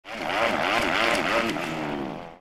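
A motorcycle engine revving up and down several times in quick succession, loud and steady in level.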